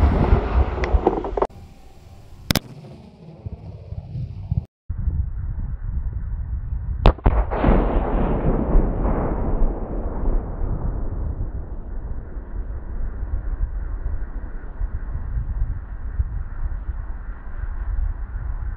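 Tannerite explosion blowing apart a 3D-printed model plane. The blast's rumble fades over the first second and a half, with a sharp crack at about two and a half seconds. Then the blast is heard again about seven seconds in as a sharp crack followed by a long, dull rumble that slowly dies away.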